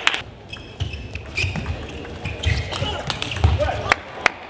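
Table tennis ball clicking off bats and the table at an irregular pace, with a few short squeaks and low thuds.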